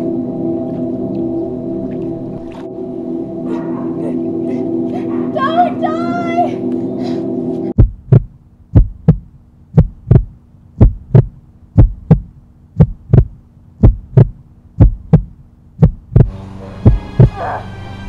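A heartbeat sound effect: about ten loud, low double thumps (lub-dub) less than a second apart, starting sharply about eight seconds in and stopping near the end. Before it, a steady droning hum with a brief voice-like cry.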